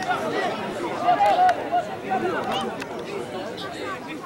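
Several voices calling and shouting at once, overlapping and unintelligible, as players and onlookers shout during open play in a rugby match.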